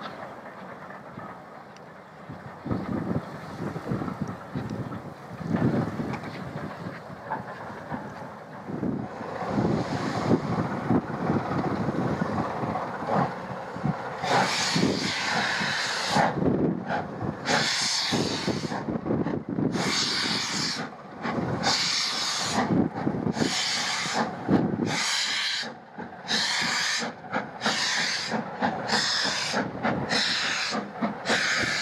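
Steam locomotive working a train: at first a fainter running rumble, then, from about halfway, loud regular exhaust beats as it pulls away from a stand, the beats gradually quickening. Steam hisses from its open cylinder drain cocks.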